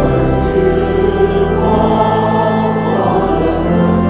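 A church congregation singing a hymn together, many voices over steady, held low accompaniment notes.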